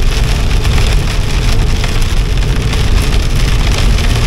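Rain hitting the windscreen and body of a moving car, over a steady low rumble of tyres on the wet road and the engine, heard from inside the cabin.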